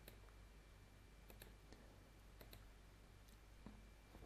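Near silence with several faint computer mouse clicks, some in quick pairs, over a low steady room hum.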